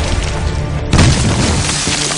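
Music mixed with cannon fire from a sailing warship: one loud boom about a second in.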